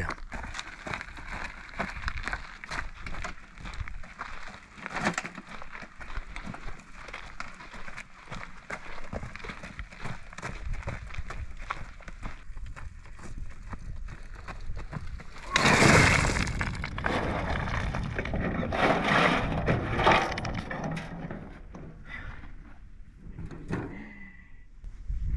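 Steel wheelbarrow loaded with rocks being pushed over rough dirt, the rocks rattling in the tray. About 16 seconds in the load is tipped and the rocks tumble out onto a pile in a loud clattering rush, followed by a few more bursts of clatter as the last of them are shaken out.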